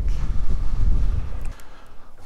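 Wind buffeting the microphone: an irregular low rumble that eases off about a second and a half in.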